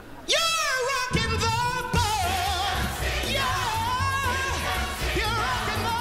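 A male singer belts a loud high note into a microphone that slides down and holds, and a pit band comes in under him about a second in with a heavy beat, the voice carrying on over a brassy Broadway show tune.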